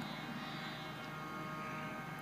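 A pause between spoken phrases, holding only a faint steady hum with thin held tones through the amplified sound system.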